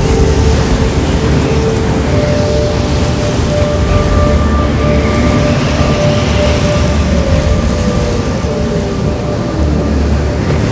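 Snowstorm wind blowing with a deep rumble, under sustained score drones of held tones; one tone slides downward in the second half.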